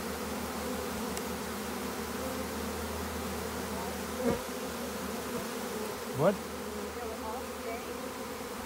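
A honeybee swarm buzzing on the open frames of a hive box, a dense steady hum from many bees at once. A brief louder sound stands out about four seconds in.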